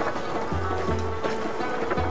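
Background music with a steady beat and a repeating low bass line.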